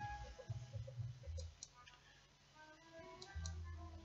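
Faint background music with a few light mouse clicks as moves are stepped through in chess software.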